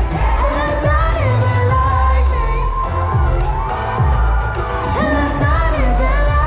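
Male pop vocal group singing live through a PA over an amplified backing beat with a pulsing bass.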